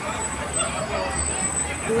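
Busy city street: traffic going by with a low rumble, and the babble of passers-by talking.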